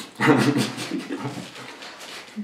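A man's breathy laughter, loudest near the start and tailing off.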